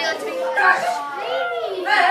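Classroom chatter: many children's voices talking over one another at once.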